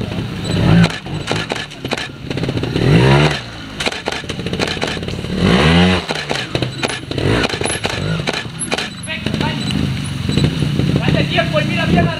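Trials motorcycle engine blipped in short, sharp revs as it is ridden over rocks, each rev rising and falling, with the loudest about three seconds in and near six seconds. Spectators' voices are heard around it.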